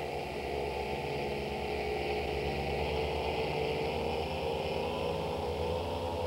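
A steady, unchanging droning hum with many sustained low tones and a faint hiss above them.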